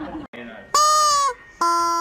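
A small dog giving two drawn-out, steady-pitched cries, the second lower than the first, each dropping in pitch as it ends.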